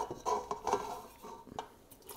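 Cooked penne tipped from a stainless steel pot into a pot of sauce: a soft slide of pasta with a few light metal clinks of pot on pot, dying away near the end.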